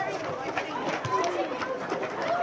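Several indistinct voices of players and spectators calling out across a football ground, overlapping one another.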